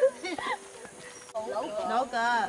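Indistinct voices of people talking, with a short lull in the middle.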